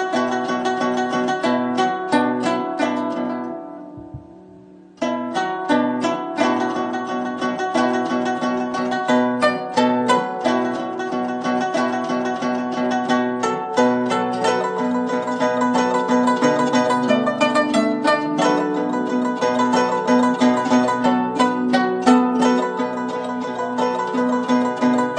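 Guzheng (Chinese zither) played: a quick run of plucked notes that fades away about four seconds in, then starts again abruptly a second later and goes on with dense plucking, with small swells in loudness, part of the allegro section with its many soft-to-loud rises.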